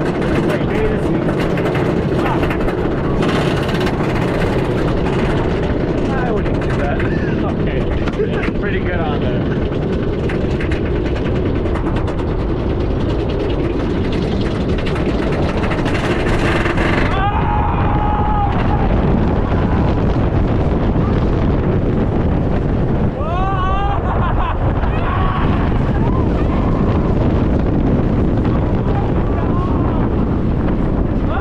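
Iron Gwazi, a Rocky Mountain Construction hybrid roller coaster, with the train climbing its lift hill and the lift running steadily with clatter. About halfway through that mechanical noise stops and gives way to a loud rush of wind, with riders yelling as the train drops.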